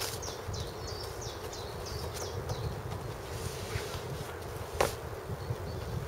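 High chirps from a small bird, repeating about two to three times a second for the first half, over a steady low outdoor rumble. A single sharp knock comes near the end.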